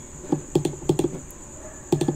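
A computer mouse clicking about five or six times at irregular intervals, over a faint steady high-pitched whine.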